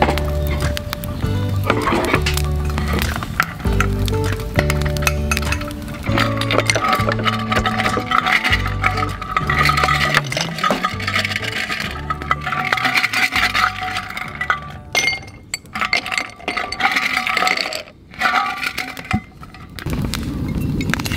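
Background music with a repeating bass line, over ice cubes clinking as they are dropped into a drinking glass.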